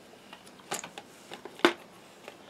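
A few light clicks and knocks from a Meccano metal-and-plastic model car being handled and turned over, the sharpest near the end.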